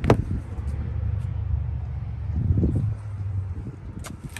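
A sharp click of a 2020 Ford Expedition's rear door latch as the door is pulled open, followed by a low steady rumble of wind and handling noise on a phone microphone.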